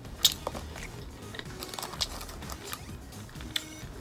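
A bite into a slice of pizza and the chewing that follows, close to the microphone: a sharp crunch about a quarter second in, then scattered chewing clicks and smacks. Music plays underneath.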